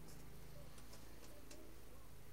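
A few faint, irregular clicks over a low steady hum.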